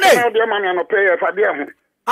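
Speech only: a voice talking, stopping shortly before the end.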